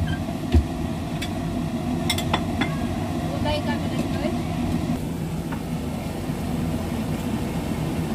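Steady low mechanical hum with a faint tone in it, a sharp low thump about half a second in, and a few faint clicks.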